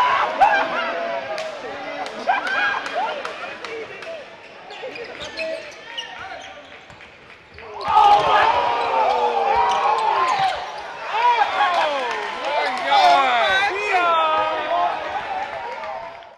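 Basketball dribbling on a hardwood gym floor with a crowd of spectators shouting and hollering over it. The voices die down for a few seconds in the middle, then burst out loudly about eight seconds in and keep going.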